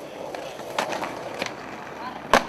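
Skateboard wheels rolling on a ramp, with a couple of sharp clacks about a second apart, near the middle of the stretch.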